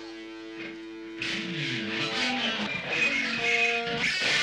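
Electric guitars played through an amplifier: a held note rings at first, then about a second in the playing gets louder and rougher, with sliding notes.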